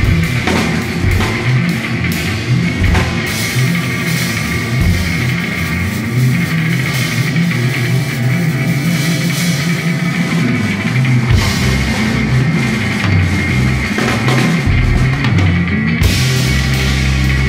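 Loud live instrumental rock from a trio of drum kit, electric guitar and bassoon: shifting heavy low notes under cymbal crashes, with a steady high tone sitting over the whole mix.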